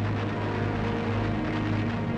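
Steady roar of aircraft engines with a strong low hum, mixed under soundtrack music.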